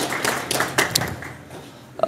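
Audience applauding, the clapping thinning and dying away about a second and a half in.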